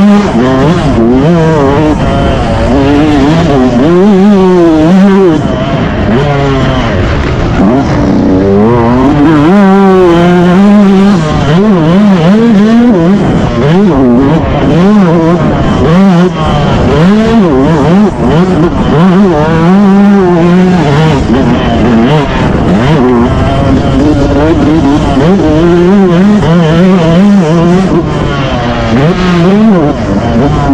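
Motocross dirt bike engine heard close up, loud, its pitch repeatedly rising and dropping as the rider opens the throttle, shifts and backs off around the track.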